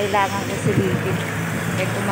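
A voice talking briefly at the start, then a few short indistinct vocal sounds, over a steady low hum that does not change.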